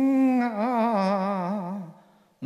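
A male Cantonese opera singer holding one long sung vowel with a wavering vibrato, the note fading out just before the end.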